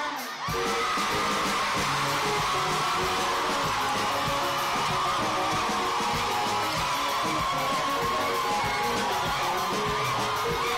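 Loud pop music over a stage sound system, starting about half a second in, with a crowd whooping and yelling over it.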